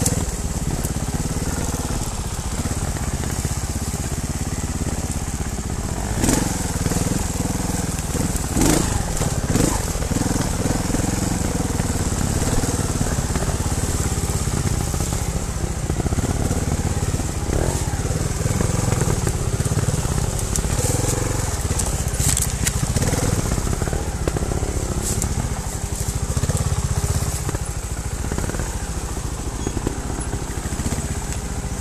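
Trials motorcycle engine running on a wooded trail, its note swelling and easing with the throttle. A few sharp knocks stand out, about six seconds in, twice around nine seconds, and again past twenty-two seconds.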